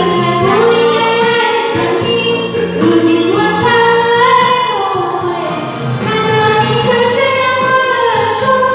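A woman singing karaoke into a microphone over a recorded backing track, drawing out long held notes.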